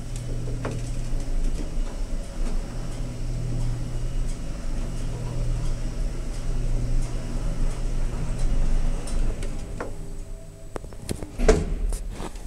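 Lift car running with a steady low hum, which dies away about ten seconds in. A couple of sharp clunks follow near the end.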